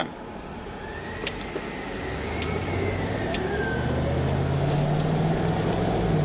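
City bus engine drawing near and growing steadily louder, with a faint high whine rising and falling over the first few seconds and a couple of light clicks, heard from inside a car.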